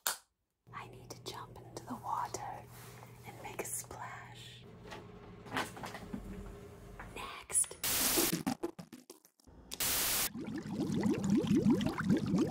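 Soft whispering with light rustles and clicks over a steady low hum. Two short bursts of hiss come near the end, followed by the start of a voice.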